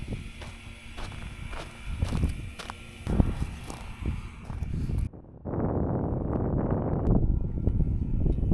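Handling noise from a handheld camera carried over dry gravel: irregular knocks and thumps, likely footsteps, over a hiss of wind on the microphone. The sound cuts off abruptly about five seconds in, and a steadier rushing noise follows.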